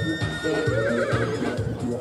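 A horse whinnying once, a high quavering call that wavers and fades away before the end, over background music with a steady beat.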